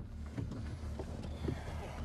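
Low steady rumble of a car idling, heard from inside the cabin, with a few faint clicks and knocks.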